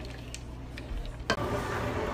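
A wooden spoon stirring a thickening custard filling in a white-lined pan: faint scrapes and light ticks over a low steady hum. About a second and a half in, a sharp click brings in a louder, fuller background.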